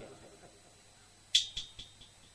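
A small metal percussion instrument is struck sharply about two-thirds of the way in, ringing high and briefly, with two lighter strikes just after. This is the accompaniment coming back in after a quiet pause in the narration.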